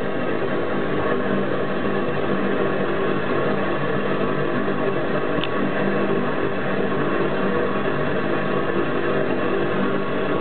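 Homemade Babington ball waste-oil burner firing: a steady burner-and-blower noise with a constant hum underneath, and a faint tick about five and a half seconds in.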